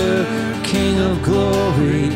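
A live worship song: acoustic guitar strummed under a sung melody, with a low held bass note coming in under it about a second in.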